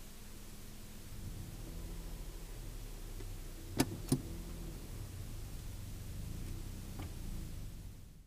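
Car engine running, heard from inside the cabin, growing a little louder about a second in as the car moves off. Two sharp clicks come close together near the middle, and a fainter click near the end.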